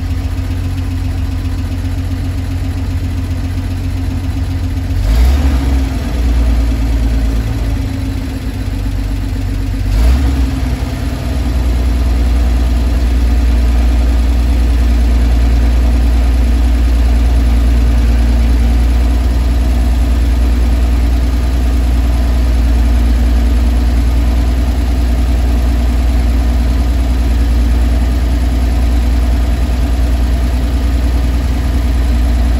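1950 Dodge Power Wagon engine idling steadily, heard from inside the cab. Two brief knocks come about five and ten seconds in, after which the low engine sound is louder and steadier.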